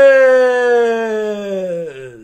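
A man's voice holding one long, loud drawn-out vowel that slowly falls in pitch. It drops further and fades away near the end.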